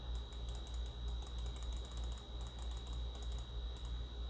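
Faint, rapid clicking at a computer, over a steady low electrical hum and a thin high whine.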